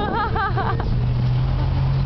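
Wind rumbling on the microphone throughout. At the start comes a person's high, warbling whoop lasting under a second, and after it a low steady hum.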